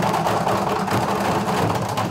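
A group drumming with sticks on plastic barrels and drums, many strokes at once blending into a dense, steady beating.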